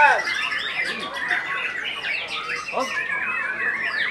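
White-rumped shamas (murai batu) singing in contest: a dense run of rapid, varied whistles and chirps that overlap, as from several caged birds singing at once.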